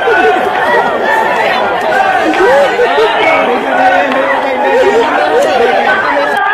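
A crowd of many voices talking and calling out at once, loud and overlapping, with no single voice standing out.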